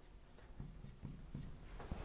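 Faint strokes of a marker writing on a glass lightboard, a few short scratchy ticks.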